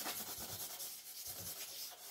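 Charcoal rubbed over paper on a drawing board in quick repeated strokes, laying down a dark background.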